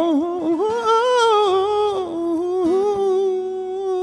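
A man's voice holding one long wordless note with vibrato and no guitar under it. The pitch wavers upward over the first couple of seconds, then settles and holds steady.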